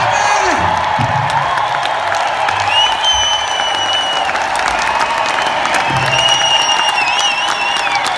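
Concert audience applauding and cheering in a large hall as the band's final notes die away in the first second. Long, high whistles sound over the applause twice, the second wavering near the end.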